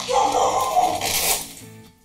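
A dog barking in a burst lasting about a second and a half, over quiet background music.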